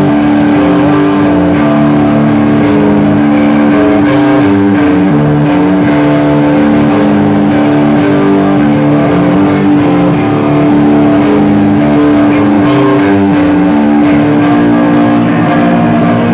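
Live instrumental rock band playing through loud amplifiers: distorted electric guitar and bass, with one note held steady over a shifting lower riff until about a second before the end. The recording is loud and distorted.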